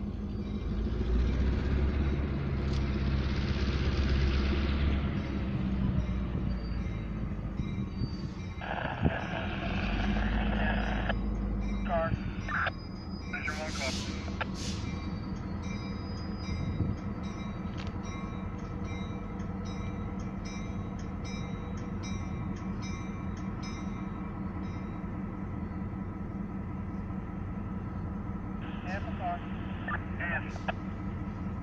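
Diesel locomotive engine running as the train creeps toward the tracks' edge, louder with rumble and hiss in the first few seconds. A dense burst of sound comes about nine seconds in and lasts a couple of seconds, followed by a few sharp high squeals around thirteen to fifteen seconds.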